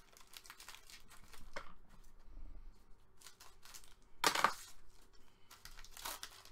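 Foil wrapper of a trading-card pack crinkling and tearing as it is handled and opened by hand, with one louder burst a little past four seconds in.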